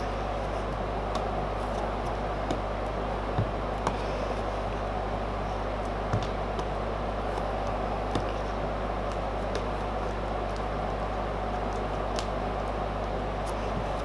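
Steady low hum and room noise, with a few faint light ticks as a putty knife works thick two-part epoxy filler on a mixing board.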